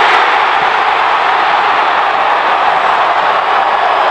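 Large football stadium crowd cheering loudly and steadily.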